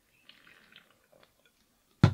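Faint sipping and swallowing as a person drinks from a plastic water bottle: a few small, soft wet sounds in the first half, barely above silence.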